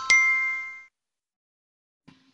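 Electronic chime sound effect: a bell-like ding struck near the start, its ringing tones fading away within about a second.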